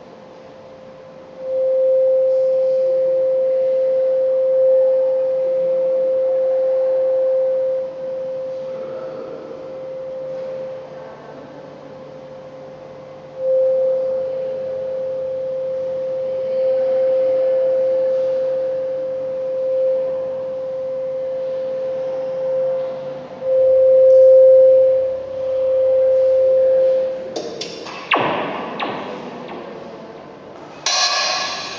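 A steady electronic sine tone at one mid pitch, played over a four-speaker loudspeaker setup. It enters a couple of seconds in, swells and fades, drops back twice and returns, and peaks in two loud swells near the end. Just before the end a brief burst of noisy crackle cuts in.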